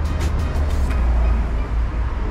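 Street ambience: a steady low rumble of road traffic, with music playing over it, its quick ticking beat thinning out about a second in.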